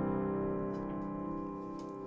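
Final piano chord, played on a keyboard in the key of C, held and slowly fading out at the end of the song.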